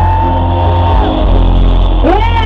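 Loud live concert music with a heavy, steady bass and one long held note for about the first second, with the crowd shouting underneath.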